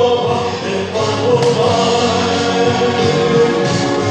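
Voices singing a slow pop ballad over a recorded backing track, on long held notes.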